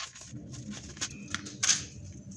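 Rustling of a small padded paper mailing envelope and its wrapping as a small cardboard box is pulled out and unwrapped by hand, a run of short rustles with a louder one about one and a half seconds in.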